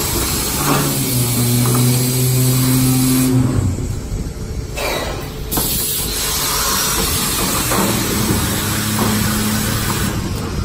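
PZB-500-F5 grain weighing and vacuum packing machine running. A steady low hum comes on for about three seconds near the start and again for a couple of seconds near the end, over a constant machine hiss that briefly drops out in the middle.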